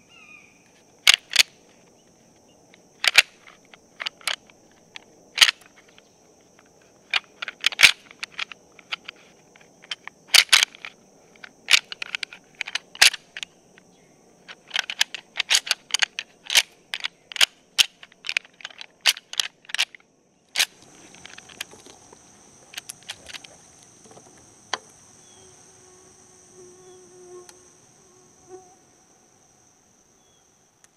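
Steady high insect buzz, with a run of sharp clicks in irregular clusters through the first twenty seconds or so. A faint low tone comes in near the end.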